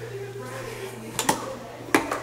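A steady low electrical hum from the house's circuit breaker panels, loud enough to be heard from upstairs. Two sharp clicks land about a second in and near the end.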